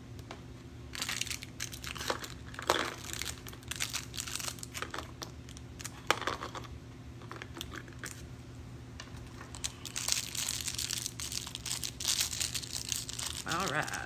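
Small plastic jewelry bags crinkling and rustling in the hands as they are being opened, in irregular spells that are thickest near the end.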